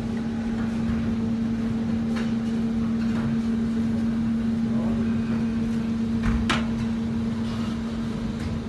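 Steady electrical hum of kitchen machinery, one constant tone over a background hiss, with a few faint clicks and one sharp click about six and a half seconds in.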